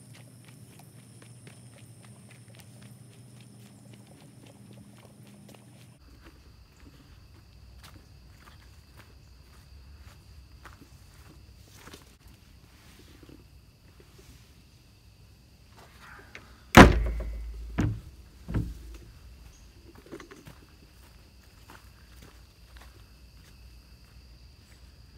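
Footsteps on a leaf-littered forest path under the steady chirring of crickets. About two-thirds of the way through come one loud thump and then two smaller ones close after it.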